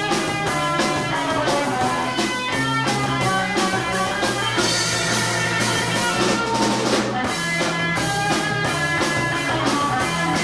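Live rock band playing: electric guitars, bass guitar and drum kit, with sustained guitar notes over a steady drum beat.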